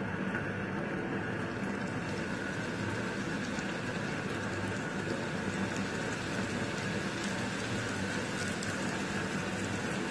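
Hot oil in a frying pan sizzling and crackling as raw samosas are slid in and begin to deep-fry; the crackle grows fuller about two seconds in.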